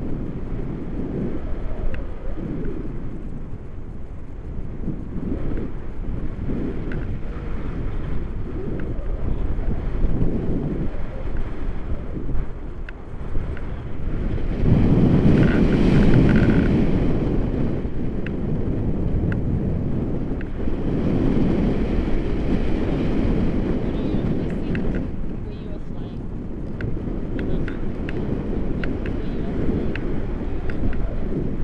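Wind buffeting the microphone of a camera on a paraglider in flight: a rough, low, uneven rumble that swells into stronger gusts about halfway through and again a few seconds later.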